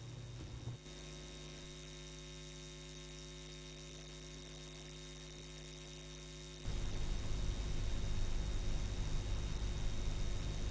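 Steady electrical mains hum, a buzz with a stack of even overtones, on the playback audio feed. About seven seconds in, a louder rough rumble and hiss comes in as the soundtrack of an old archive film starts to play.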